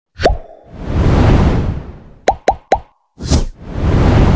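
Editing sound effects for an animated YouTube subscribe button. A short pop comes first, then a long swelling whoosh, then three quick plops in a row with falling pitch, then another pop followed by a second whoosh.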